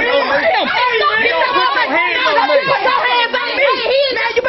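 Several people talking loudly over one another in a heated argument, their voices overlapping so that no words stand out.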